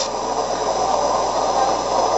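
The MTH Chapelon Pacific model locomotive's onboard sound system playing a recorded standing steam locomotive: a steady hiss and rumble from its small speaker.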